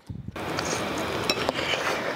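A steady hiss with a few faint clicks of a metal fork against a plate.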